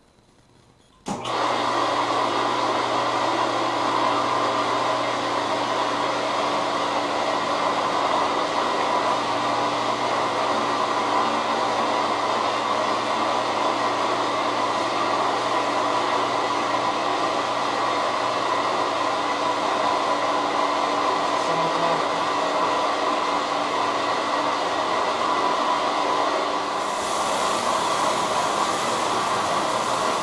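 A hydrographics dip tank's water agitation system switches on abruptly about a second in and runs steadily: a motor hum under a strong rush of churning water. A brighter hiss joins in near the end.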